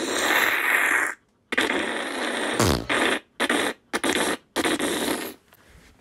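Comic fart noise: a hissing blast of about a second, then a string of shorter noisy bursts broken by abrupt silences, ending a little after five seconds in.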